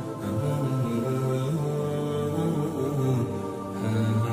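Background vocal music: a male voice chanting in long, slowly changing held notes, with no beat.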